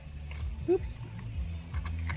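Small electric screwdriver running with a low, steady motor hum as it backs a screw out of a plastic antenna adapter housing.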